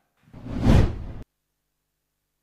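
A broadcast whoosh sound effect about a second long, swelling up and then cutting off suddenly.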